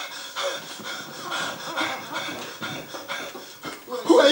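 A woman panting: a run of quick, heavy, breathy breaths.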